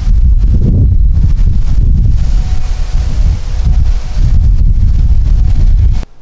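High wind buffeting the microphone: a loud, low rumble that surges and dips with the gusts, then cuts off abruptly at the end.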